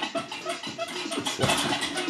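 Rapid, repeated punches landing on a small hanging punching bag, a quick irregular run of strikes, over background music.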